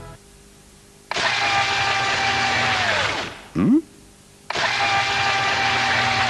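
Electric blender whirring in two bursts of about two seconds each, the motor's pitch falling as it spins down each time, with a short, loud rising swoop between the two bursts.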